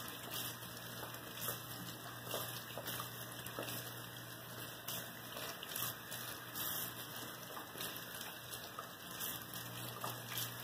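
Bathroom sink faucet running steadily as hands are rinsed under the stream, with irregular splashes and spatters of water.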